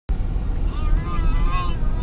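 Car cabin driving noise: a steady low rumble from the engine and tyres on wet pavement, with a faint wavering voice-like tone in the middle.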